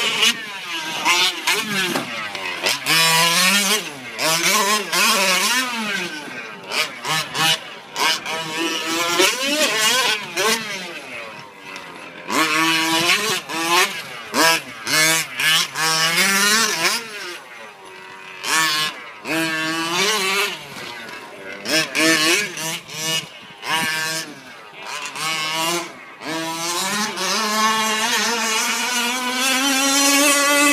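Small gas two-stroke engine of a 1/5-scale RC short course truck revving up and down over and over, its pitch rising and falling with quick lifts off the throttle. Near the end it holds one long rising rev.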